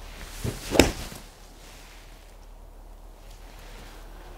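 A golf club swung through and striking a ball off a hitting mat: a brief swish, then one sharp crack of impact a little under a second in.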